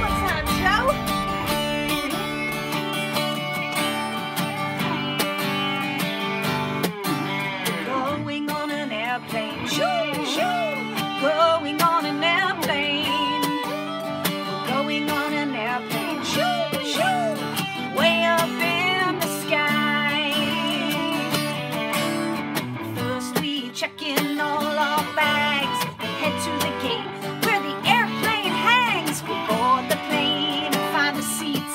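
A song played live on a strummed acoustic guitar and an Ibanez electric guitar, with a woman singing over them.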